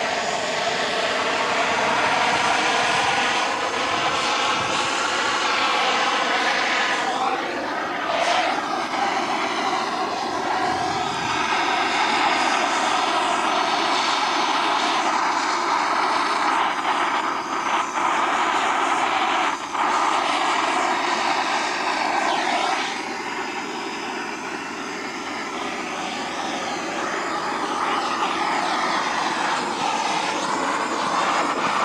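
Chainsaw running as it carves into wood, its engine pitch rising and falling through the cuts, with brief drops in level about 8, 17 and 23 seconds in.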